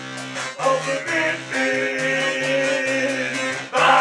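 Live electro-rock band playing a song, over held bass notes, with a louder accent near the end.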